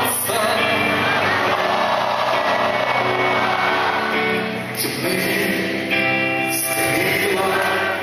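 Live rock band playing: electric guitars and drums, with a man singing into the microphone.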